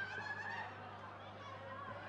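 Faint, distant shouts of footballers calling on an open pitch during play, as wavering high voices that fade after the first second, over a steady low hum.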